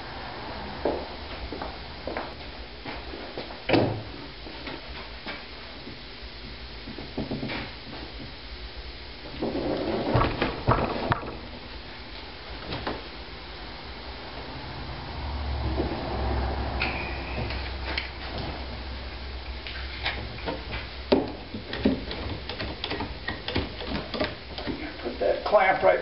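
Wooden framing boards and OSB sheathing being handled and fitted into place: scattered knocks, taps and scrapes of wood, with a busier cluster of knocks a little before halfway and a longer low rumbling stretch after it.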